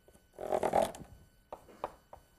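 Chalk scratching on a blackboard for about half a second, then two short sharp taps, as a line is drawn and marked in chalk.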